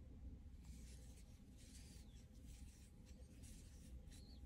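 Near silence, with a few faint, soft rustles of cotton yarn and a metal crochet hook working a treble stitch, over a faint steady hum.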